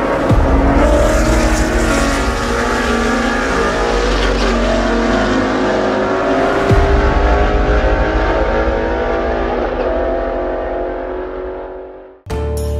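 Race car engine running steadily, its pitch shifting only slightly, with a surge about two-thirds of the way through; it fades out over the last couple of seconds.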